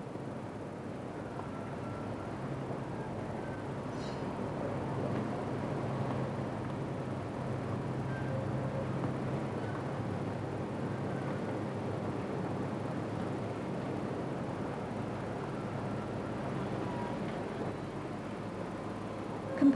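Steady industrial plant noise in a sodium electrolysis cell room: an even machinery rumble with a constant low hum.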